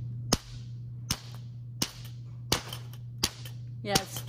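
Two metal balls being struck together through a sheet of paper: five sharp cracks, about 0.7 s apart. Each collision turns kinetic energy into sound and heat, scorching a small hole in the paper with a smell of smoke.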